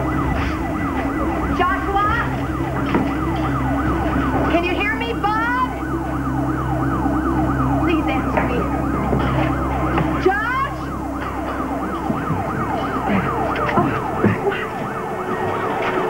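Several emergency sirens wailing at once, their pitch sweeping up and down, over a steady low rumble that drops away near the end.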